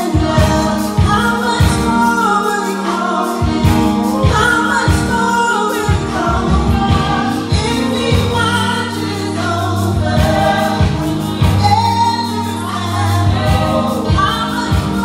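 Gospel praise team singing into microphones with live band accompaniment: several voices over drum hits, with sustained low notes joining about eight seconds in.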